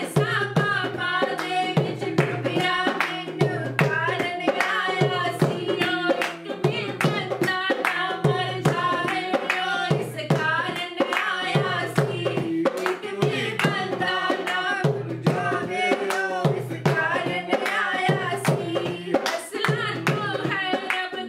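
Two women singing a Punjabi Christian worship song and clapping their hands in a steady rhythm, over instrumental backing with a repeating bass line.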